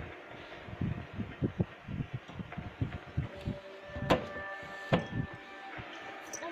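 Irregular soft low thumps and knocks, with two sharp clicks about four and five seconds in, over faint held tones in the background.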